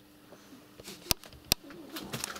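Two sharp clicks about half a second apart over a faint steady hum.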